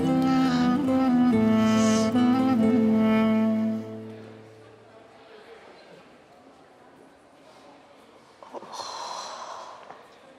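Background drama score of sustained string chords, fading out about four seconds in, leaving faint room tone; near the end a brief soft noise is heard.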